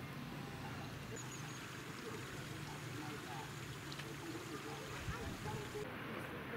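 Quiet outdoor background noise with faint, indistinct voices.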